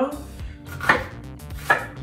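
Chef's knife chopping through a yellow onion on a wooden cutting board: two sharp cuts, about a second in and near the end, with lighter knife ticks between.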